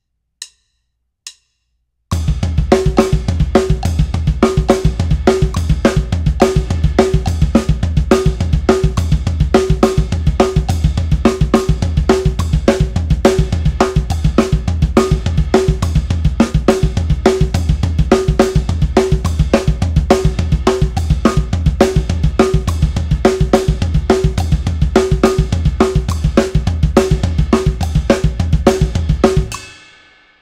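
Acoustic drum kit playing a fast hand-to-foot split pattern in 16th-note triplets, hand strokes on snare and toms alternating with kick drum strokes, switching between two orchestrations of the pattern. Two short clicks near the start, then the playing comes in about two seconds in and runs steadily until shortly before the end.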